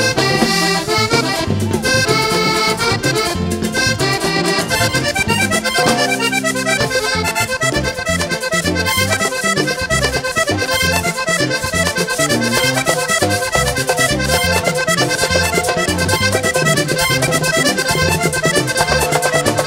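Vallenato band playing an instrumental passage led by a diatonic button accordion, running fast melodic lines over an electric bass and a steady percussion beat.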